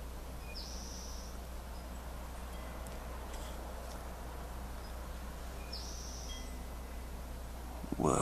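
Steady low hiss and hum, with two brief high-pitched chirps about five seconds apart.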